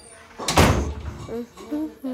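A door shutting once, a sudden heavy knock with a short noisy tail.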